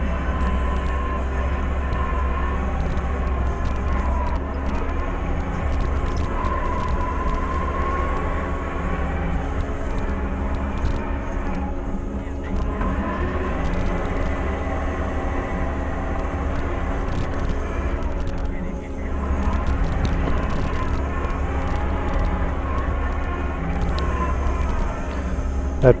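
A compact loader's engine running steadily under way, heard from inside the operator's cab as a deep steady drone with a wavering whine above it. It eases off briefly twice, about halfway through and again about two-thirds of the way in.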